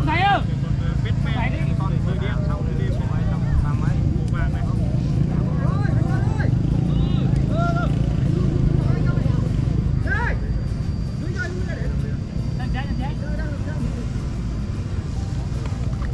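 Steady low hum of flute kites (diều sáo) sounding in the wind, with scattered voices of onlookers over it.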